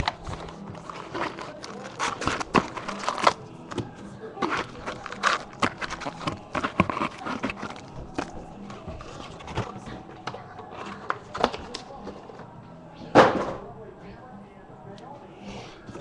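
A 2013 Bowman Chrome baseball hobby box being opened by hand: irregular crinkling, rustling and scraping of its plastic wrap, cardboard and packs, with one louder crackle about 13 seconds in.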